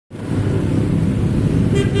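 A truck engine rumbling low and steady close by. Near the end a vehicle horn sounds briefly.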